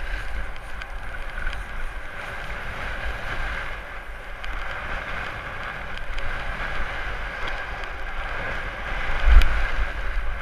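Snowboard sliding and scraping steadily over groomed snow, with wind buffeting the camera microphone. There is a louder thump about nine seconds in.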